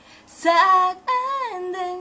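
A 14-year-old girl singing a K-pop song in Korean, solo voice. A quick breath comes about half a second in, then a sung phrase with a falling slide near the middle.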